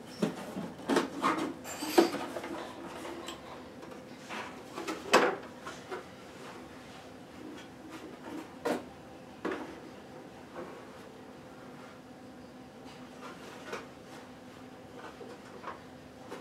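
Hard plastic carrying cover of a portable sewing machine being handled, lifted off and set aside: a run of knocks and clatters, loudest in the first six seconds, then only a few light knocks.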